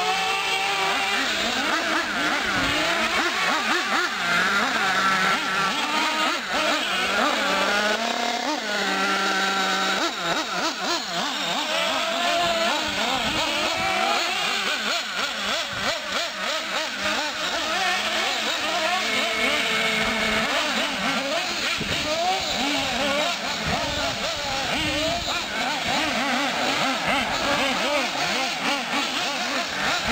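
Nitro-powered 1/8-scale RC short course trucks (Team Associated SC8s) racing, their small glow-fuel engines whining high and revving up and down constantly as they accelerate and back off around the track. Several trucks are heard at once, their pitches overlapping.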